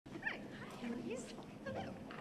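Faint, scattered voices of an audience murmuring in a hall.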